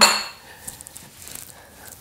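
Faint, scattered light clinks and taps of cutlery and china plates on a kitchen counter, after a voice trails off at the very start.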